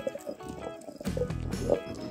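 Background music over the irregular wet knocks and scrapes of a stone pestle turning in a stone grinding pit (aattukal), grinding a coarse chutney paste.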